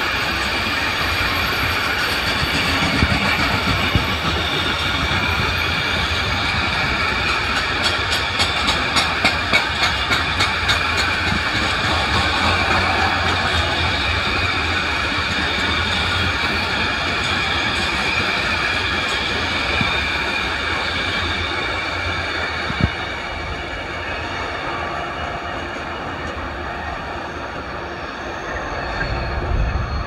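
Freight train of covered bogie coal hopper wagons rolling past: a steady rumble and rail noise, with a run of regular wheel clicks over the rail joints partway through. The noise eases off near the end as the last wagons draw away.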